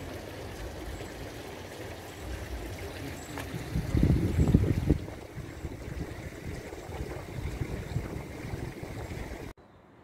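Water from a street fountain trickling and splashing over its rim into a drain grate, a steady rush, with a louder low rumble about four seconds in.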